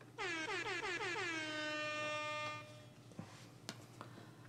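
A horn-like pitched sound effect: a quick run of falling pitch sweeps that settles into a steady held tone and stops about two and a half seconds in.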